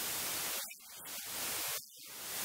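Steady static hiss across the whole audio track, with two brief dropouts, and no voice to be heard under it.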